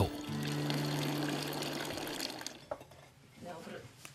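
Water pouring from the spout of a wooden trough fountain, under a low held music chord that fades out about two and a half seconds in. A voice speaks briefly near the end.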